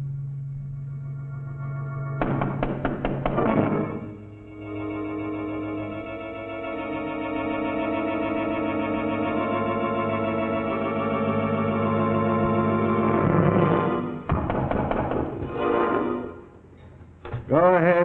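Suspenseful organ music: held chords with a slight waver, a sudden fuller chord about two seconds in, then shorter stabs after the sound drops away near the end.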